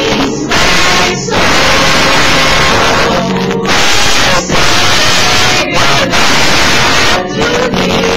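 A mixed group of men and women singing a song together, recorded so loud that the sound is harshly distorted, a dense hiss covering the voices with short breaks between phrases.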